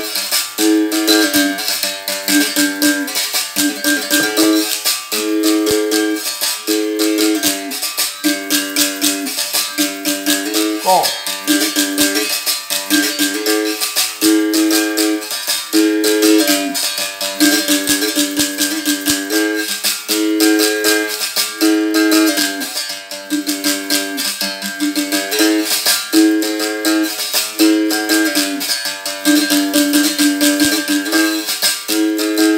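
Berimbau played with a caxixi shaker. The stick strikes the steel wire in a steady repeating rhythm, switching between notes, while the stone is held touching the wire for the stone-effect variation. A brief sliding pitch comes about eleven seconds in.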